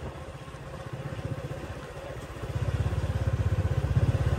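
Small motorbike engine running at low speed while riding, getting louder about halfway through.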